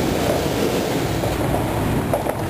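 Steady outdoor noise coming in through an open sliding glass balcony door.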